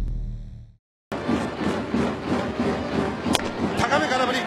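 Low rumbling logo-sting music fades out, and after a moment of silence ballpark crowd noise begins. About three seconds in there is a single sharp pop: a pitch smacking into the catcher's mitt.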